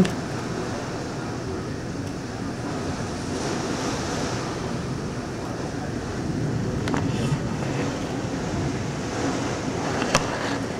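Heavy rain and strong wind of a severe thunderstorm: a steady rushing noise that swells a little twice, in the middle and past the halfway point.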